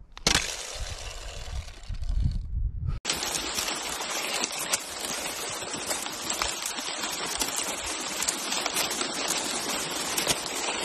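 Shattered thin lake ice: a dense, steady crackle and tinkle of many small ice pieces, starting abruptly about three seconds in. Before that, a low rumble with hiss over clear lake ice.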